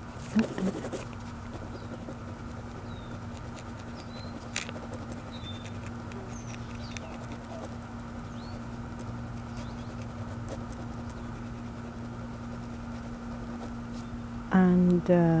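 Soft scratching of a multicolour mechanical pencil's coloured lead shading on paper, over a steady low hum. A few faint, short high chirps sound in the middle, and there is one sharp tick about four and a half seconds in.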